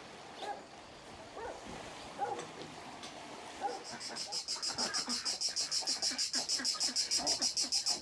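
Rhythmic pulsing insect chirping, about five pulses a second, starts about halfway through and grows steadily louder. Before it come only a few faint, short calls over a quiet background.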